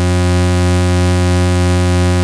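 Eurorack modular patch, a Mutable Instruments Sheep wavetable oscillator fed back through a Vert mixer with Switches expander, holding a single steady low drone on one unchanging pitch with many overtones.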